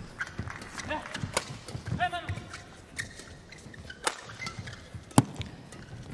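A badminton doubles rally: rackets strike the shuttlecock in a string of sharp cracks, the loudest about five seconds in. Shoes squeak in short chirps on the court floor about two seconds in.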